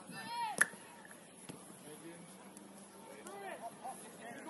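Footballers shouting to each other during a match, with a sharp knock of the ball being kicked about half a second in and a fainter knock a second later. More shouted calls come near the end.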